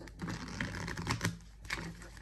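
A deck of tarot cards being shuffled by hand: a quick run of papery card flicks and clicks that thins out about a second and a half in.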